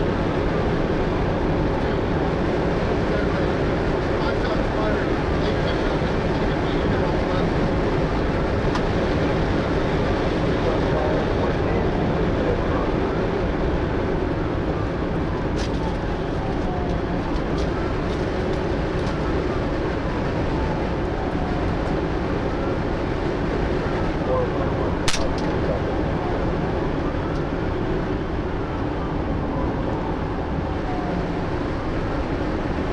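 Ford patrol vehicle in a pursuit at about 120 mph: steady road and wind noise heard from inside the cabin, with a siren wailing up and down faintly beneath it. A single sharp click comes about 25 seconds in.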